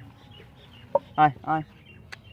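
A chicken clucking: two short calls close together a little past a second in, just after a brief sharper note.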